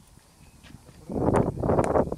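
Running footfalls of a cricket bowler on dry, dusty ground, loud and close from about a second in, with sharp knocks among them.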